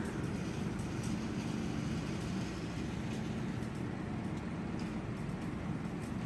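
Steady outdoor background noise with a low, even hum.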